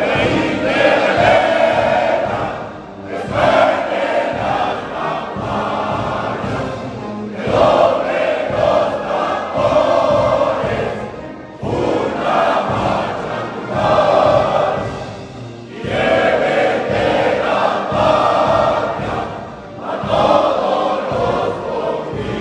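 A large group of voices singing a hymn together in unison, in phrases of about four seconds each with a short breath between them.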